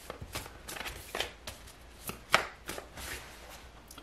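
A tarot deck being shuffled by hand: a run of light, irregular card snaps and flicks, the loudest a little past halfway, before a card is drawn.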